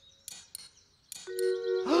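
The cartoon's click-clack sound effect: a few sharp, spaced clicks, then a held musical chord comes in after about a second.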